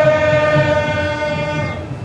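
A wind instrument holds one long, bright, horn-like note that wavers slightly in pitch, fading out near the end and starting again just after.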